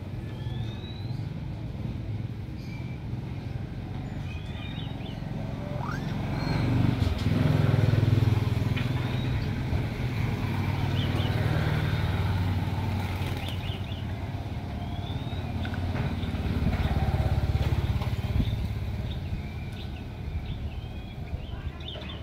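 Low engine rumble of passing motor vehicles, swelling twice as they go by, about a third of the way in and again past the middle. Faint short whistled bird calls sound over it.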